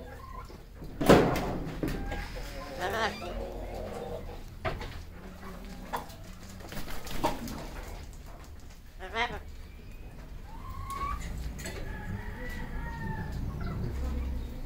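An amazon parrot calling in separate bursts: a loud, harsh squawk about a second in, several shorter squawks and half-voiced, word-like calls after it, and a few short rising whistles near the end.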